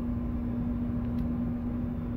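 Steady machinery drone of a small cargo ship underway, heard inside the wheelhouse: a low rumble with one constant hum tone.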